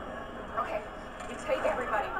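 Speech: quiet dialogue from the TV episode playing, with a steady low hum beneath it.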